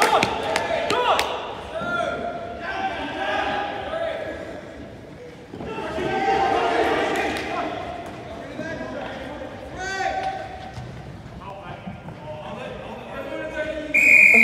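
Players' voices calling out across a large indoor sports hall, with a few sharp knocks of the ball in the first second or so.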